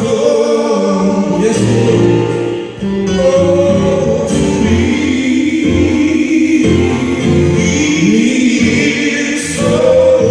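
Two men singing a gospel song, live into microphones, with electronic keyboard accompaniment. Long held notes, with a short break between phrases about three seconds in.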